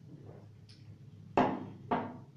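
Two sharp knocks about half a second apart, the first the louder, each with a short ringing tail.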